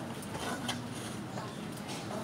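Indistinct background voices in a room, with light rustles and clicks from twisted rope being handled and pulled through a knot.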